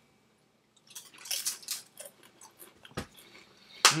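Lay's potato chips being bitten and chewed, a crackly, irregular crunching that starts about a second in, with a sharp click near three seconds. A short 'hmm' at the end.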